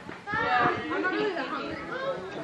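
Indistinct chatter of several people's voices talking in the background, with no clear words.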